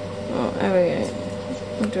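A woman's voice muttering while she struggles with a tight bottle cap, with a couple of small clicks of plastic being handled near the end, over a steady low hum.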